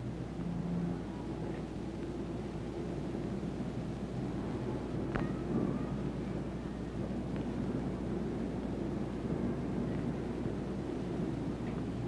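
A low, steady background rumble with hiss, with a single faint click about five seconds in.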